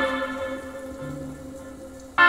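Recorded music played through Wharfedale Linton Heritage three-way loudspeakers: a held chord slowly dying away, with a low note coming in about halfway through.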